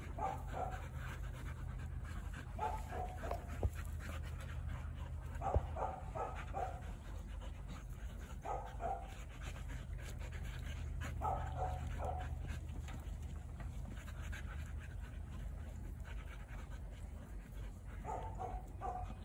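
Dogs panting hard during rough play, the breaths coming in short quick clusters every few seconds.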